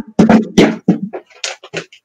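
Stray noise coming through a participant's open microphone on a video call: several sharp knocks and clatters in quick succession.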